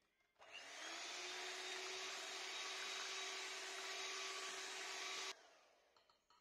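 Electric hand mixer running with its beaters in cream cheese batter, mixing in vanilla extract. It starts about half a second in, comes up to a steady whir and is switched off suddenly about five seconds in.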